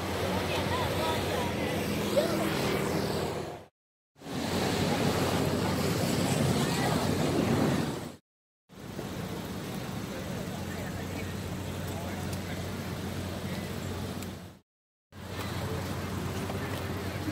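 Outdoor night ambience: indistinct voices in the background over steady street noise and a low hum, in short clips, each cut off abruptly by a brief gap of silence.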